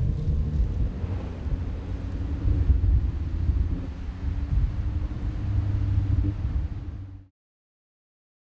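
Tuned Nissan GT-R's twin-turbo V6 running under load, a steady low rumble with a few held engine tones. It cuts off suddenly about seven seconds in.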